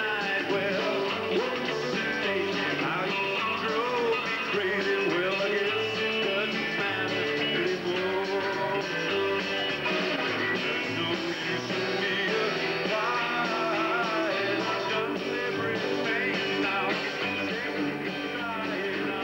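Live rock and roll band playing a song, with electric guitars and bass guitar.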